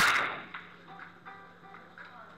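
Billiard balls clacking: one loud, sharp hit right at the start that rings out for about half a second, followed by a few fainter clicks.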